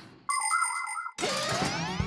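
Cartoon transition sting: a short electronic tone with a slight waver in pitch that cuts off abruptly, then a rising sweep leading into music.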